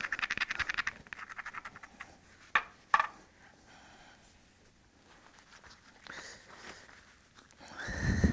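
Stone abrader rubbed quickly back and forth across the edge of a flint core, grinding the striking platform to reinforce it so it won't crush under the billet blow. The scraping stops after about a second and a half, and two sharp clicks follow about three seconds in.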